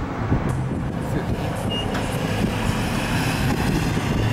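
Steady road-traffic noise: engine and tyre rumble from a vehicle such as a pickup truck driving past on the road.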